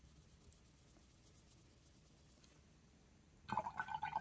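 Faint scratching of a paintbrush on paper card, then about half a second before the end water starts running or pouring with a steady ringing pitch.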